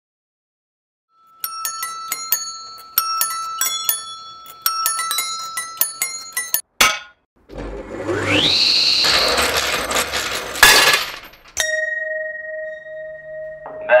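A quick run of struck, bell-like metallic chimes, then a table saw spinning up with a rising whine and running, with a brief loud burst near the end of the run. A steady held tone follows.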